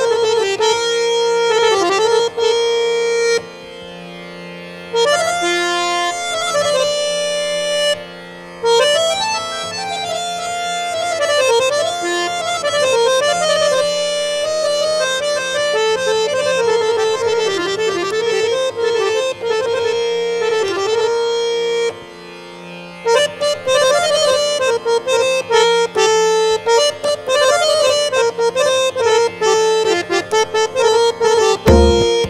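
Samvadini (Indian harmonium) playing a flowing, ornamented melody over a steady low drone note, dropping briefly to quieter held notes a few times.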